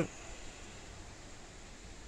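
Faint steady background hiss with no distinct sound event in it.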